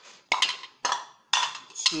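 Aluminium moi moi cups clanking as they are set down and knocked against one another, three sharp metallic knocks with a short ring after each.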